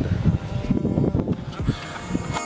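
Irregular low rumble of wind buffeting a handheld camera's microphone, with handling knocks as the camera swings around.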